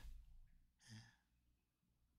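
Near silence in a pause of a man's talk, broken once about a second in by a short, soft spoken 'ye' (yes).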